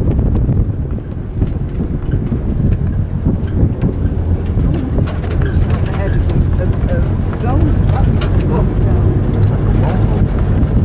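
Wind buffeting the microphone over the steady rumble and rattle of a 4x4 driving across desert sand. Faint voices come in during the second half.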